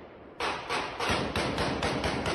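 Rapid gunfire from a street shootout, about eight shots in quick succession starting about half a second in, as picked up by a phone recording.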